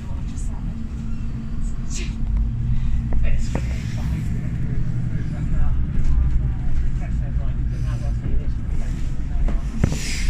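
Diesel passenger train running, heard from inside the carriage: a steady low rumble and engine hum, with a few sharp clicks of the wheels over rail joints and points.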